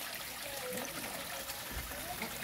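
Water trickling steadily into a garden fish pond.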